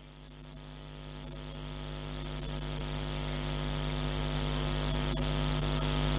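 Steady electrical hum of a band's amplifiers and sound system left on between songs: a low drone with several evenly spaced overtones that grows gradually louder.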